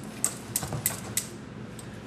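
Wire whisk beating thick batter in a stainless steel bowl, its tines clicking sharply against the metal about three times a second, with a short pause past the middle.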